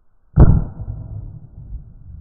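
A single shotgun shot about a third of a second in, loud enough to overload the microphone, with a low rumbling echo dying away over the following second.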